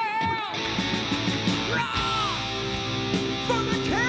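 Live heavy metal band: a male singer's wavering held note, then distorted electric guitars, bass and drums come in together about half a second in, with the singer's voice returning over the band near the end.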